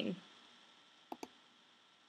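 Two quick clicks of a computer mouse button close together, a little past a second in, against faint room tone.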